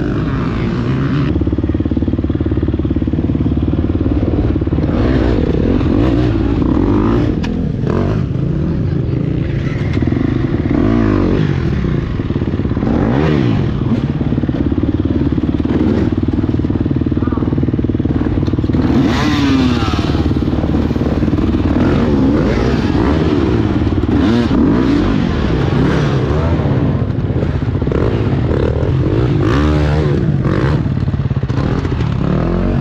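Gas Gas EX250F four-stroke single-cylinder dirt bike engine revving up and down as it is ridden slowly through mud and over logs, with a few knocks from the bike and a sharper rev about two-thirds of the way in.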